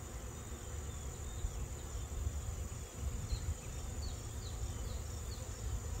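Honeybees buzzing in the air around an open hive, over a steady high-pitched insect trill and a low rumble.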